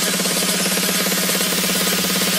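Electro dance track from a sound-system competition mix: a very fast repeating stutter over one held low note, with noisy highs, building toward a drop.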